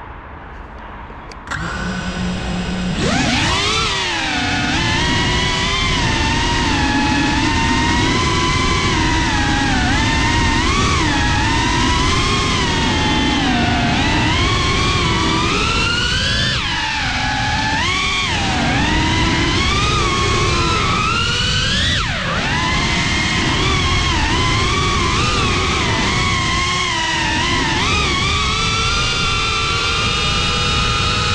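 An FPV quadcopter's brushless motors whining. A low, even hum starts about a second and a half in, the pitch jumps up as it takes off around three seconds in, and then the pitch keeps swelling and dipping with the throttle.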